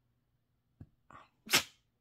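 A puppy sneezing once, loud and sudden, about one and a half seconds in, after two faint short sounds.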